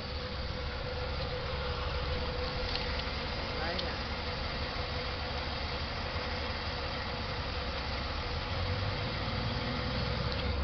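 Buick 3800 V6 engine idling steadily while it draws Seafoam in through a vacuum line, with a thin steady tone over the low idle rumble.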